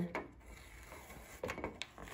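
Faint rubbing of fingers smoothing contact paper onto a tree collar to work out wrinkles and bubbles, with a few small clicks about one and a half seconds in.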